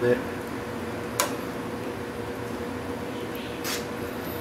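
A pot of soup swirled on the stove: one sharp clink about a second in and a brief hiss near the end, over a steady hum.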